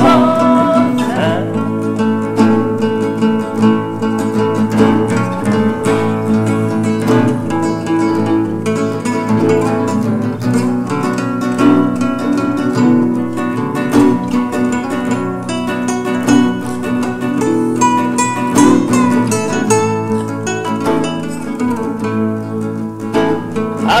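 Gibson C-1 nylon-string classical guitar played as several layered parts at once: picked chords and single-note lines in a slow instrumental break between sung lines.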